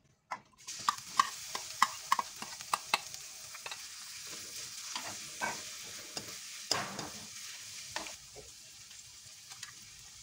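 Sliced shallots sizzling in hot oil in a hammered aluminium wok, stirred with a wooden spatula that clicks and knocks against the pan. The sizzling starts about half a second in, and the spatula knocks come thickest over the first few seconds.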